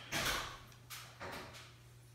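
A few short scrapes and knocks from handling a candy apple and the pot of hot candy while dipping, the strongest in the first half-second and two lighter ones about a second in. A faint steady low hum sits underneath.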